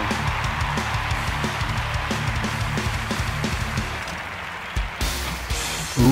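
Background music with a steady beat, changing character about five seconds in.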